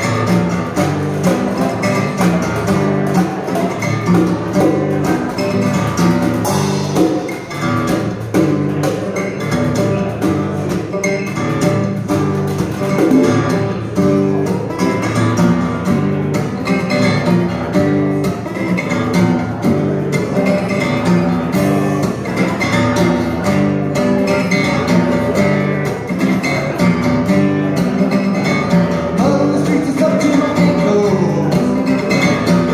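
Live acoustic guitar strummed hard in a steady, rhythmic riff, with no pause.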